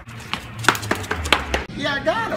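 A man whispering rapidly into someone's ear: a string of sharp, clicking consonants and breath with no voiced tone behind it.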